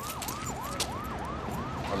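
Police car siren in a fast yelp, one tone sweeping up and down about three times a second.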